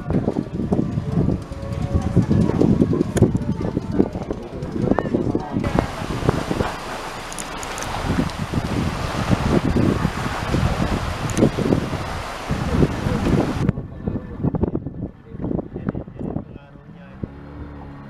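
People talking outdoors in a language the recogniser did not transcribe. In the middle stretch a steady hiss, like wind on the microphone, starts and stops abruptly.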